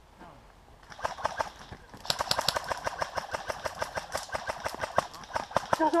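Airsoft guns firing rapid bursts: a fast run of sharp clicks that starts about a second in and keeps going, densest from about two seconds in.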